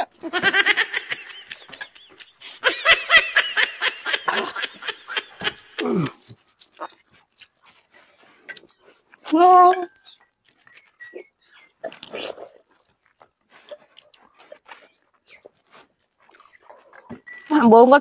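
Eating by hand: scattered small clicks and smacks of mouths chewing and fingers working rice on plates. For the first six seconds a long, wavering whining cry sounds over it, and a short hum comes about halfway through.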